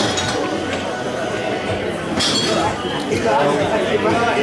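Pool balls clicking together as the cue ball runs into the pack, with one sharp clack about two seconds in and a few lighter clicks after it, over the murmur of people talking in the room.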